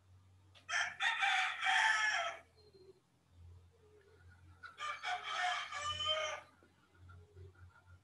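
A rooster crowing twice, each crow lasting about two seconds, the second following a few seconds after the first.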